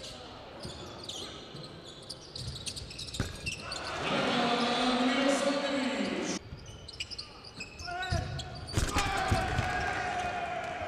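Indoor basketball game sound: a ball bouncing on the hardwood court with scattered knocks, and voices in the hall that swell into a louder stretch of shouting from about four seconds in, breaking off suddenly a little after six seconds.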